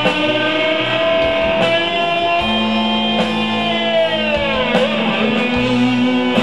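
Live rock band in an instrumental passage: an electric guitar holds one long lead note that bends down in pitch about four to five seconds in, with the band playing underneath.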